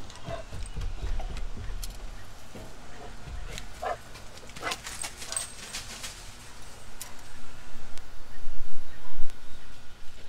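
Metal grill tongs clicking and tapping against a kettle grill's cooking grate as food is set down, a handful of short clicks with a few brief squeaks, over a low rumble that grows louder near the end.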